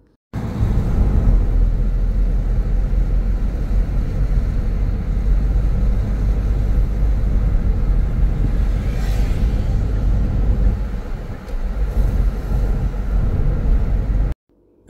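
Steady low rumble of a car driving along a road, heard from inside the cabin: engine and tyre noise.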